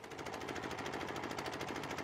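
A machine or motor running steadily with a fast, even rattle of about twenty-odd pulses a second.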